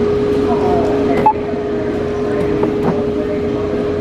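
Store checkout ambience: a steady, even hum under a haze of background noise and faint distant voices.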